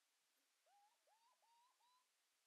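Near silence, with four very faint short calls in the second half, each rising quickly and then holding steady.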